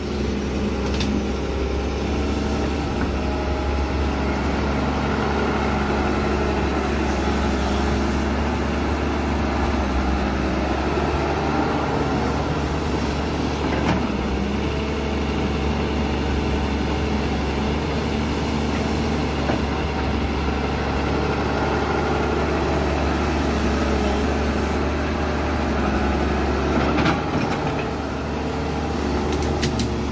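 Doosan wheeled excavator's diesel engine running steadily while the bucket digs into the soil, with a few sharp knocks near the end.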